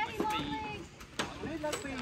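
Faint voices of people talking, with a sharp knock at the start and another a little over a second in.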